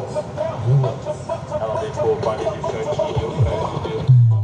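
Music from a large carnival sound-system rig, a wavering melody or vocal line over heavy sub-bass, with crowd voices mixed in.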